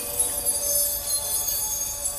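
A glittering, chime-like magic sound effect, a shimmering sparkle high up, with soft sustained music tones beneath.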